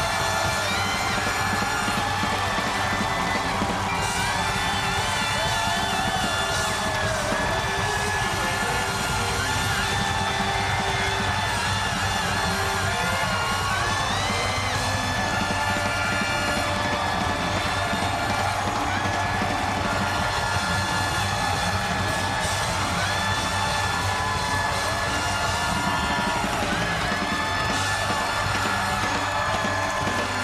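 Live house band playing with drums, continuous and steady throughout, with a studio audience cheering and whooping over it.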